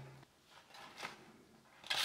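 Faint handling of a sheet of paper, then near the end a freshly sharpened kitchen knife's edge begins slicing through the paper with a loud rasp. This is a test of the edge's sharpness, and the edge is pretty sharp.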